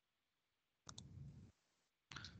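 Near silence broken about a second in by two quick faint clicks, followed by a brief low muffled rustle over a video-call audio line.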